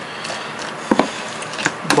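A spoon stirring wet rehydrated granola and blueberries in a plastic container: a soft wet scraping, with a sharp knock against the container about a second in and another near the end.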